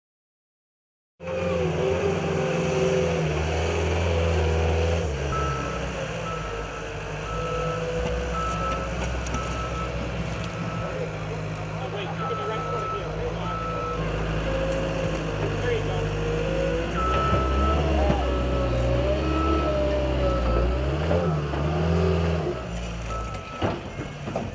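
A heavy vehicle's engine running, with its reversing alarm beeping in steady pulses. The sound starts about a second in, and the beeping pauses for a few seconds midway.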